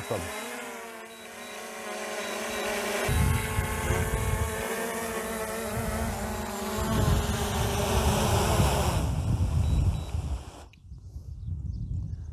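DJI Mavic Air 2 quadcopter's propellers buzzing with a wavering whine as it descends and sets down in an automatic precision landing, with a low rumble of its downwash on the microphone from about three seconds in. The motors wind down and cut off near the end once it has landed.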